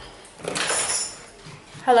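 A brief clattery handling noise about half a second in as a door-entry phone handset is lifted from its wall cradle, then a woman says "Hello?" into it near the end.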